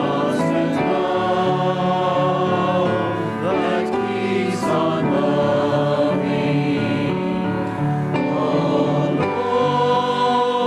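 Church choir singing sustained, full chords that change every second or so.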